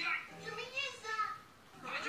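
A high-pitched voice speaking, with the words indistinct and a short pause about one and a half seconds in.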